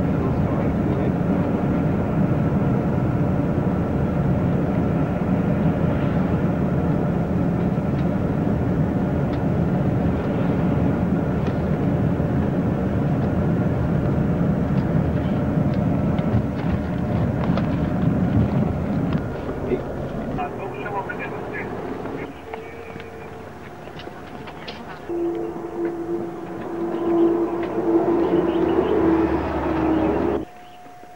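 Engine and road noise inside a moving vehicle, steady for about the first twenty seconds. The noise then drops and changes, as the vehicle slows.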